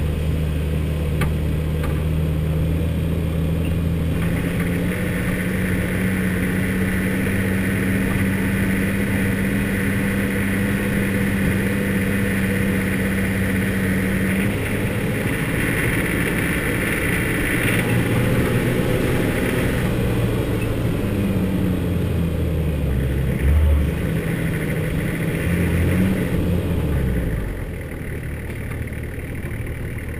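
A 4x4's engine running as it drives along a rough dirt track, holding a steady note for long stretches, then rising and falling as the speed changes, with a brief thump about three quarters of the way in. Near the end the engine drops to a lower, quieter note.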